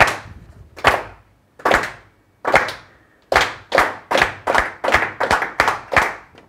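A roomful of people clapping a rhythm in unison: four even claps, one per beat (a bar of quarter notes in 4/4), then eight claps twice as fast (a bar of eighth notes).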